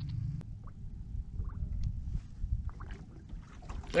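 Low steady rumble of wind and water against the hull of a small boat on open sea, with a few faint ticks.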